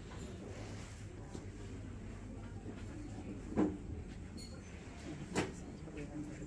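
Steady low background hum of a shop interior, broken by two short knocks, one a little past halfway and one near the end.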